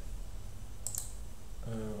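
A single short computer mouse click about a second in, over a faint steady low background hum.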